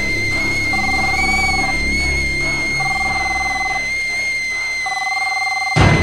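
Stovetop kettle whistling in one steady high tone while a phone rings in bursts about a second long, roughly every two seconds, over background music. Loud drum hits come in near the end.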